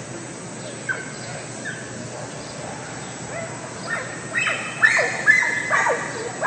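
A dog barking: a single bark about a second in, then a quick run of louder barks in the last two seconds.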